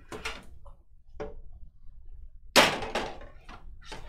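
A Panini Immaculate cardboard box and the cards inside it being handled on a table: a few light knocks and taps, and one louder thump with a brief scrape about two and a half seconds in.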